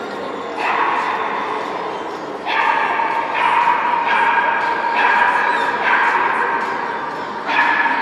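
Fox terrier yapping in about six bouts of quick high barks.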